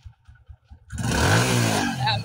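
Motorcycle engine idling with faint low pulses, then revved up loudly about a second in, its pitch bending up and down as the throttle is worked.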